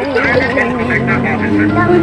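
A young girl laughing and talking in a high voice, with a steady low hum coming in underneath about a second in.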